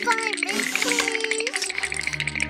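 Cartoon background music with a character's wordless, high-pitched voice sounds over it, a few short falling glides in pitch.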